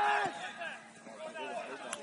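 Shouting voices across a football pitch: one long held shout ends just after the start, followed by fainter, scattered calls from further off.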